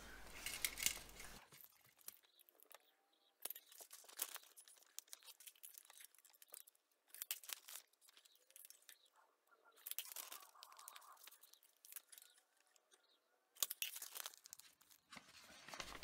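Faint, scattered rustles and scratches of a felt-tip marker drawing on a sheet of paper, and of the paper being handled, with short gaps of near silence between them.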